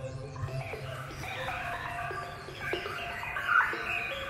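The electronic music's bass beat drops out about half a second in, leaving many short, chirping bird-like calls, with one louder call near the end.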